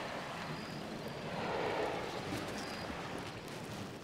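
Steady outdoor ambience at night: an even hiss of noise with no clear single source.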